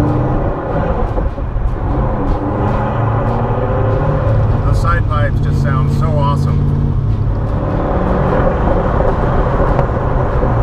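The 1965 Corvette's 327 cubic-inch Chevy V8 running under way through its side exhaust. The engine note dips briefly near the start and changes pitch again about seven seconds in.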